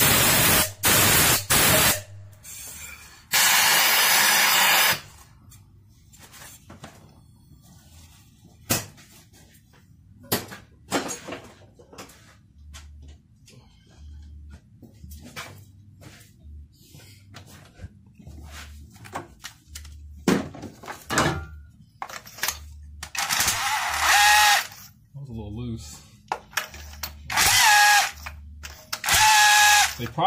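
Loud bursts of hissing in the first few seconds, then scattered clicks and knocks of hand work under the hood. Near the end a cordless power tool whirs in two bursts of about two seconds each as it turns out a spark plug.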